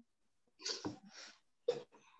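A person's faint, breathy noises heard through a video-call microphone: three short puffs of air within about a second and a half.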